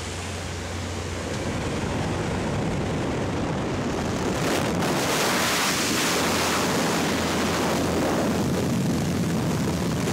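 Wind rushing through the open door of a small jump plane in flight, mixed with the aircraft's engine drone. The rush grows louder and fuller about four and a half seconds in.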